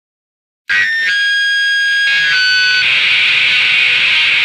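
Silence, then less than a second in, heavily distorted electric guitar comes in abruptly with steady, high, whining feedback tones that shift pitch a couple of times and then settle into a harsh, dense wash of noise. This is the opening of a crust punk track.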